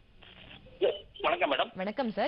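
A person talking, after a short pause of just under a second at the start.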